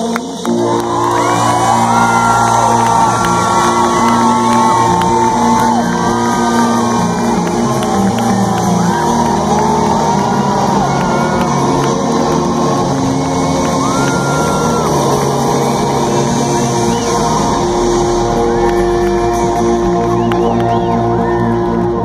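A rock band playing live from the audience's position, long held chords ringing, while the crowd shouts, whoops and cheers over the music.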